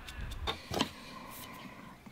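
Two light knocks of a small knife and a mushroom brush being set down on a wooden board, followed by a faint steady hum.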